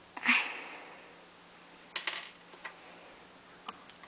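A short hissing breath close to the microphone about a quarter second in, followed by a few light clicks of plastic LEGO pieces being handled.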